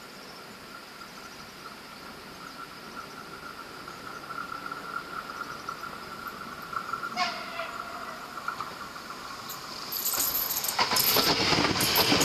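Porto urban electric multiple unit approaching and passing close by: a faint steady high whine slowly grows as it nears, then from about ten seconds in the train goes by loudly with a rush of noise and repeated wheel clicks over the track.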